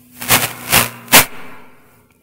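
Loud bursts of crackling static from the church sound system, three of them in quick succession over a low steady hum. This is interference on the microphone line, which the pastor takes for a stray signal being picked up.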